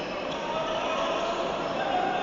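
Sports hall sound during a handball match: a steady din of players' and spectators' voices echoing in the gym, with a ball bouncing on the court.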